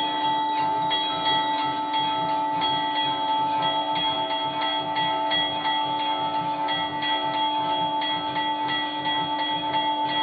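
Temple bells, including a brass hand bell, ringing rapidly and without pause during an aarti, with a steady low tone held under them.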